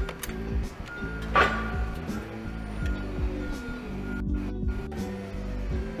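A Toyota electric forklift's reverse alarm beeping, a single high tone repeating about once a second, which warns that the truck is travelling in reverse. Background music plays underneath.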